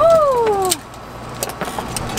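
A woman's short, high vocal exclamation that rises and then slides down in pitch, lasting under a second. A few faint clicks follow over a low steady hum.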